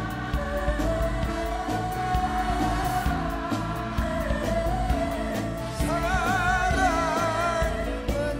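Trot song performed live by a male singer with a backing band: he holds a long wordless "ah" line over a steady drum beat, and a wavering, vibrato-laden melody comes in about six seconds in.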